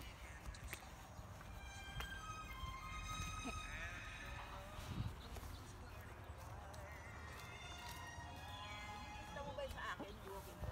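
A horse whinnying faintly, a few drawn-out calls with a quavering pitch, over a steady low rumble.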